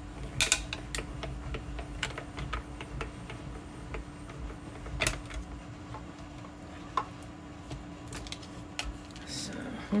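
Light clicks and clatter of a small die-cutting machine and its clear plastic cutting plates as the plate sandwich comes back out of the machine and is handled, with two sharper clacks, about half a second in and about five seconds in.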